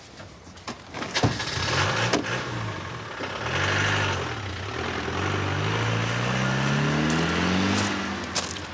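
A thump about a second in, then a Land Rover Defender's engine starts and runs, its pitch rising steadily over the last few seconds as it accelerates away.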